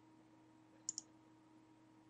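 A computer mouse button pressed and released about a second in: two sharp clicks a split second apart, over a faint steady electrical hum.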